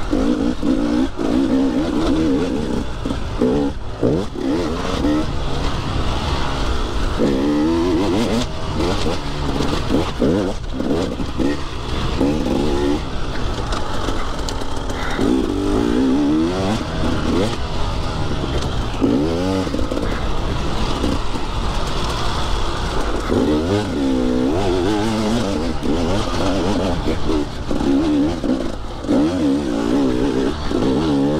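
Enduro dirt bike engine under way on a trail, repeatedly revving up and easing off as the throttle is worked, its pitch rising and falling every few seconds.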